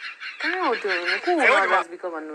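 A high-pitched human voice making wordless, wavering sounds that slide up and down in pitch, starting about half a second in.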